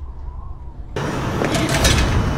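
Horror-series sound design: a low rumble, then about a second in a sudden loud burst of noise with a few sharp crackles.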